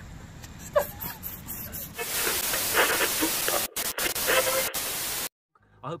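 A loud, steady hiss comes in about two seconds in, with voices faint beneath it and two brief dropouts, and cuts off abruptly just after five seconds. A man starts speaking at the very end.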